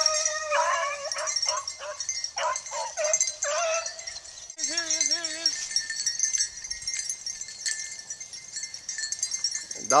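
Beagles baying on a rabbit: a run of yelps and drawn-out bawls through the first four seconds, then a short wavering howl about five seconds in.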